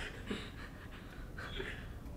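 Soft, breathy laughter in short bursts, once near the start and again about one and a half seconds in.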